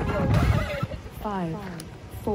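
The dance music cuts off at the start, followed by a brief low rumble. About a second in, a short call slides down in pitch, and a second falling call starts near the end: voices whooping.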